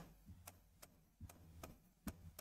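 Near silence with a few faint, irregular ticks of a pen tapping and moving on a writing board during handwriting.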